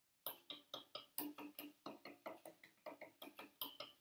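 Unamplified 1965 Fender Precision Bass played quietly: a steady run of short plucked notes, about five a second. Each note starts with a sharp tick, the hollow "ticky" contact noise of late-60s threaded saddles sitting on the original '65 bridge baseplate.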